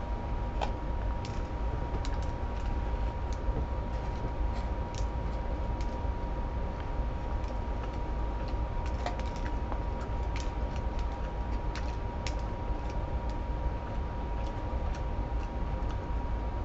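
A person chewing a bite of a chicken Big Mac with a crispy breaded patty: faint, irregular mouth clicks and crunches. Under them runs a steady low background hum with a thin high tone.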